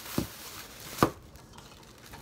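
Plastic bag rustling as an item is pulled out of it, with two sharp knocks, about a second apart, of something hard against a tabletop.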